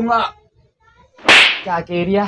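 A single sharp slap across the face, about halfway through, followed by a man's voice.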